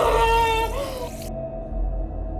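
A woman's high, wavering wail that slides and jumps in pitch and cuts off about a second in, over a low steady hum.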